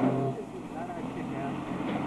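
A live garage rock band breaks off: the last held, distorted low note cuts off about a third of a second in, leaving a steady low hum and indistinct voices.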